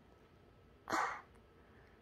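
A toddler's short, breathy puff of air, close to the microphone, about a second in.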